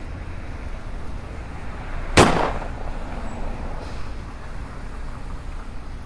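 A single sharp crack about two seconds in, over a steady low outdoor rumble.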